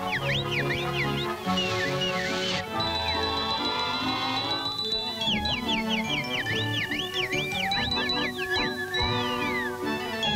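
Orchestral cartoon score with quick whistled bird chirps darting up and down in pitch above it, and a short hiss about a second and a half in.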